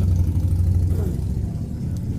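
Low, steady rumble that eases off about a second and a half in.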